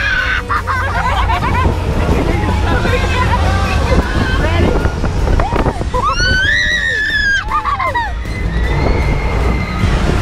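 Girls screaming and laughing on a moving fairground ride, with a long high shriek about six seconds in. A steady low rumble of wind on the ride-mounted microphone runs underneath.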